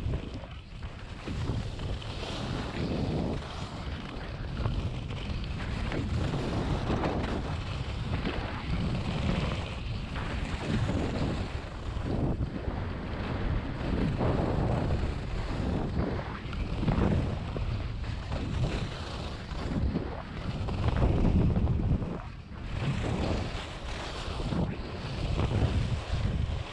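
Wind rushing over the camera microphone while skis scrape and hiss across the snow, swelling every couple of seconds with each turn of the descent.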